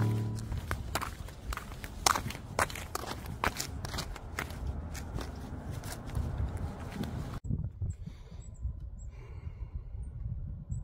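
Footsteps in flip-flops on a concrete sidewalk, a quick run of sharp slaps, two or three a second, after intro music fades out in the first half second. The steps stop abruptly about seven seconds in, leaving a quieter outdoor background with a low rumble.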